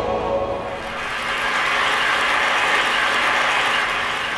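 A music sting fading out in the first second, then steady audience applause.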